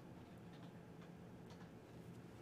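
Near silence: room tone with a steady low hum and a few faint, sparse clicks of a computer mouse.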